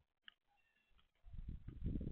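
Eurasian collared doves pecking and shuffling on the feeder's plastic seed tray close to the microphone: a run of low knocks and rustles that starts just over a second in. A few faint, short high chirps come before it.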